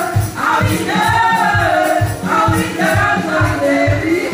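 Gospel worship music: several voices singing together over a steady drum beat of about four beats a second.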